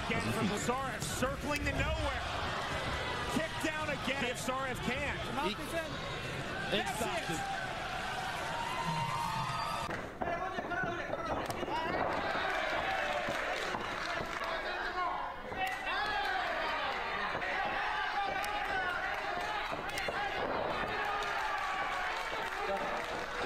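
Combat-sports fight footage with voices talking over the arena noise, and sharp thuds of strikes landing, most of them in the first half.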